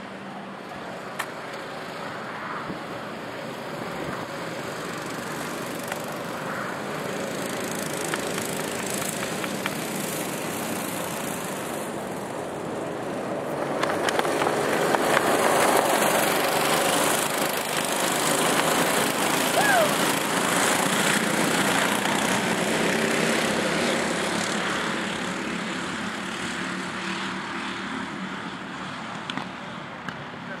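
Several go-karts' small engines running on the track, swelling to loudest about halfway through as the karts pass close by, then fading as they move away.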